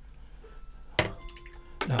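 A single sharp tap about a second in, followed by a faint ringing, over quiet room tone; a man's voice starts just before the end.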